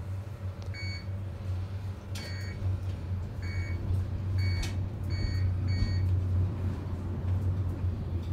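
Car of a 1988 Fujitec traction elevator running down the shaft at speed: a steady low hum and rumble, with a series of about six short high electronic beeps and a couple of sharp clicks in the middle of the ride.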